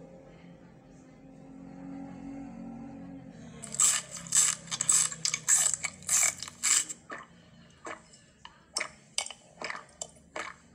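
Crunchy biting and chewing, about two crunches a second for three seconds, then a few more spaced crunches near the end, after a quiet low hum at the start.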